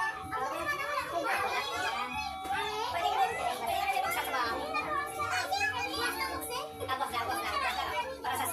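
Lively overlapping chatter of a mixed group of adults and children talking and calling out at once, the children's voices high and excited.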